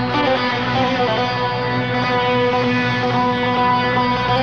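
Bouzouki playing the instrumental introduction of a Greek song, a plucked melody line over a steady, sustained low accompaniment.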